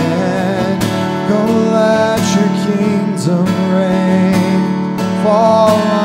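Acoustic guitar strummed steadily through sustained chords, with a man's voice singing long wordless notes over it at the start and again near the end.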